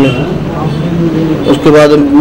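A man speaking, with a pause of about a second in the middle. A steady low hum runs underneath throughout.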